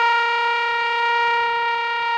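A single long held synthesizer note, steady in pitch and rich in overtones, slowly getting quieter.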